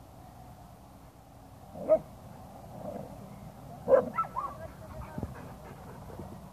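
Dogs at play: two sharp barks about two seconds apart, the second followed by a few short higher yips.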